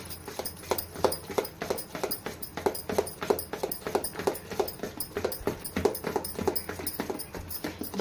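Thick ground urad dal batter being beaten by hand in a stainless steel bowl: a steady run of wet slapping strokes, about four or five a second. The batter is beaten hard and long so the vadas turn out soft.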